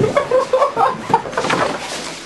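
People laughing in short, choppy, cackling bursts.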